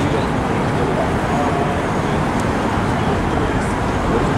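Steady traffic noise of a busy city street, a dense even rumble, with faint voices in the background.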